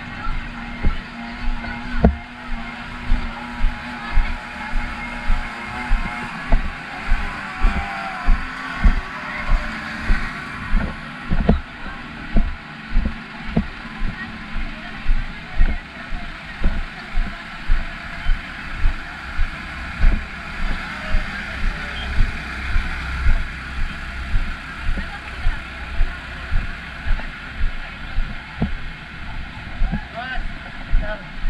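Footfalls of a person walking, coming through a head-worn camera as dull thumps about twice a second. Under them are the steady running of fire truck engines and the chatter of a crowd in a narrow street.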